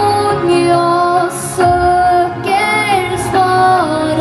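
A young girl singing a pop song live into a handheld microphone over instrumental accompaniment, holding long notes with some vibrato between short breaths.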